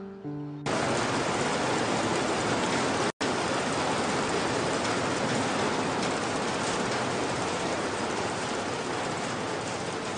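Piano music breaks off under a second in and gives way to the steady, dense noise of cotton-gin machinery running, which drops out for an instant about three seconds in.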